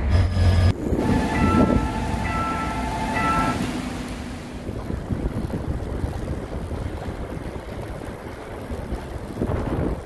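A railway level-crossing warning bell chiming in a repeating pattern for about the first three seconds. It then gives way to steady wind rushing over the microphone of a moving bicycle.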